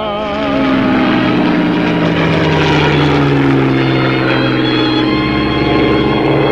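Propeller airplane flying low overhead, its engine drone swelling about half a second in and sliding down in pitch as it passes, with background music.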